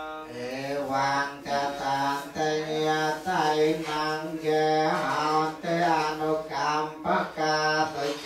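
Male Theravada Buddhist monk's voice chanting Pali verses in a melodic cadence of long held notes that step from one pitch to the next, the blessing chant given after the offering of food.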